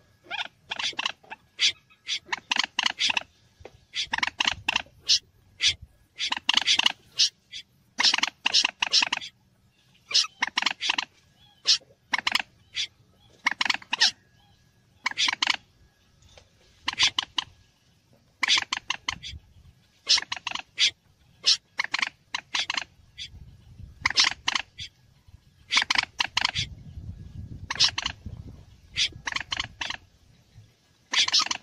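Bird-lure recording of mixed mandar (moorhen) and berkik (snipe) calls: loud clusters of short, sharp calls, repeated every second or two throughout.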